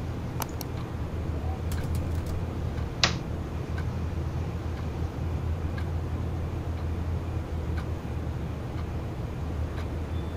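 Steady low rumble of background ambience, with a few light clicks from a computer keyboard and mouse and one sharper keystroke about three seconds in.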